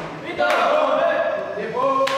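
Several men's voices shouting together in a long held cheer, starting abruptly about half a second in, with one voice rising in pitch near the end.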